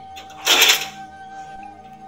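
A brief metallic rattle about half a second in, as a steel spoon is pulled from a wire dish rack crowded with steel utensils, over faint background music.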